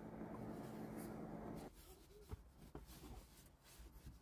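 Near silence: faint room tone with a low hum that drops out to dead silence a little under two seconds in, broken by one faint click.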